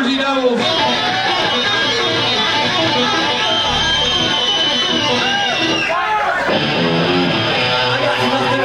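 A live rock band's electric guitars play through amplifiers on stage, with voices over them. A steady high tone is held for about two seconds in the middle, and the playing breaks off briefly about six seconds in.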